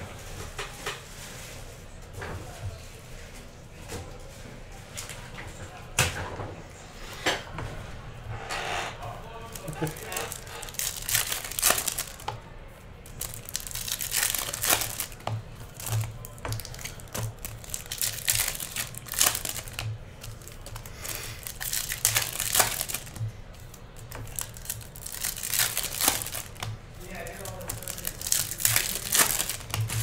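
Foil trading-card pack wrappers being torn open and crinkled by hand, a run of sharp crackles that grows busier in the second half.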